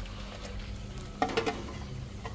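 Steady hum of aquarium filters and pumps with a crackling, bubbling water noise, and a few short clicks a little past a second in.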